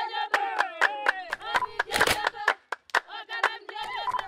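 A group of Himba women singing together with hand clapping, the claps coming sharp and uneven, several a second.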